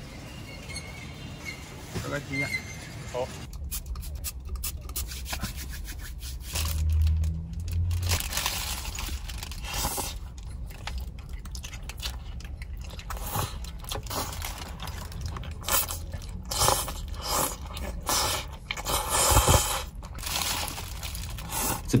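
Close-up eating sounds: a plastic bag crinkling, bites and wet chewing of a soft bread sandwich stuffed with tofu skin, in irregular bursts over the low steady hum of a car cabin.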